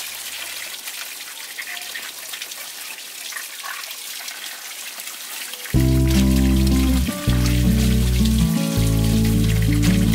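Water running from a pipe into a plastic basin and splashing as bamboo shoots are handled in it. About six seconds in, background music starts suddenly and is much louder than the water from then on.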